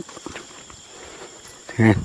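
Footsteps of people walking along a forest path through undergrowth, with a steady high insect drone behind. A man's voice starts up again near the end.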